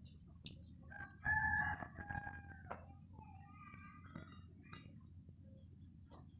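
A rooster crowing once, about a second in, a held call lasting around a second and a half; fainter bird calls follow a couple of seconds later.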